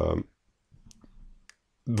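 A man's short held voiced hesitation sound, then a couple of faint clicks from a computer mouse as the on-screen article is scrolled.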